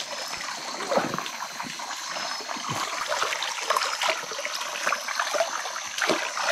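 Stream water trickling over rocks, with small irregular splashes as hands wash in it.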